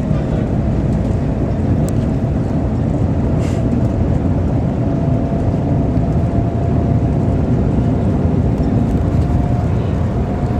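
Cabin noise inside the Shanghai Transrapid maglev train at speed: a loud, steady low rumble with a faint whine that slowly rises in pitch as the train gathers speed.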